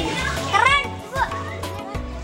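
Children's voices calling out over background music, with one high, sweeping call about half a second in.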